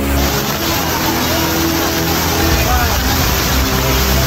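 Loud, steady rush of floodwater, with several people's voices calling out over it.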